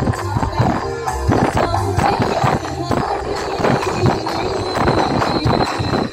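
Loud live procession music from musicians on a truck, played through a tall truck-mounted speaker stack: dense, fast drumming under a melody.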